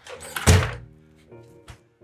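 A wooden door shutting with one heavy thud about half a second in, followed by a small click near the end, over soft background music.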